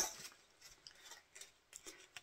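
Faint, scattered rustles and light clicks of a skein of sock yarn and its paper label being handled as it is brought out to show.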